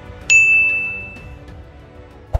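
A single bright bell-notification ding, a sound effect for clicking a subscribe bell, about a third of a second in. It rings as one clear tone and fades over about a second, over soft background music.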